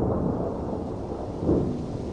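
Rolling thunder: a continuous low rumble that eases off and swells again about a second and a half in.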